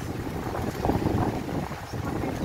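Storm wind and heavy rain, the wind buffeting the microphone in uneven gusts.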